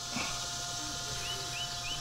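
A bird's short, high chirps repeating about four times a second, starting a little over a second in, over a faint steady tone.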